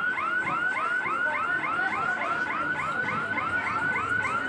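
An electronic warbling alarm tone that rises and falls evenly about four times a second. It plays over the low rumble of a suburban electric train pulling into the platform.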